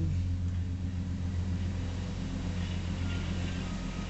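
A steady low hum, even in level, with no clear events in it.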